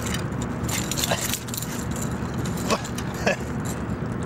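A hooked rainbow trout splashing in shallow water among rocks as it is handled by hand: a few short splashes and knocks over a steady low rumble.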